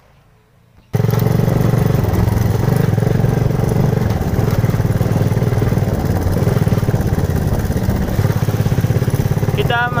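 Honda GL motorcycle's single-cylinder four-stroke engine running steadily under way, loud and with a fast, even pulsing; it comes in suddenly about a second in.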